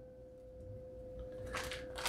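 Faint rustling of a plastic fish-shipping bag being handled, picking up near the end, over a steady faint hum.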